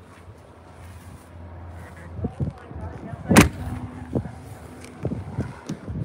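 Exterior compartment doors on a fifth-wheel RV being handled: one sharp knock a little past halfway, with several softer knocks before and after it, over a low steady hum.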